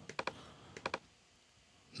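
Faint, sharp clicks from someone working a computer: a quick cluster of three or four near the start and two or three more a little under a second in.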